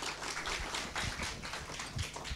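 Audience applauding: many hands clapping in a dense, steady run.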